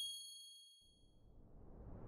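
The fading ring of a bright, bell-like logo chime dies away over about the first second. Near the end a rising whoosh begins to swell.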